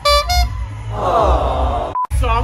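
Two short horn honks, a comic sound effect, the second a little higher than the first, followed about a second in by a wavering, warbling sound, and a brief steady test-tone beep at the very end as colour bars cut in.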